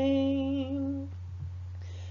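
An unaccompanied solo voice holds a sung hymn note for about a second, then stops. A low, steady hum runs underneath through the pause that follows.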